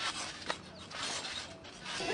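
Trampoline mat and coil springs creaking and rasping with each bounce, in a few short strokes.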